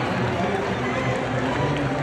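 Indistinct murmur of many voices at once, steady, with no single voice or word standing out.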